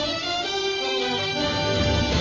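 Instrumental theme music for a talk show's opening. The bass drops away for about a second, leaving held notes, then comes back in.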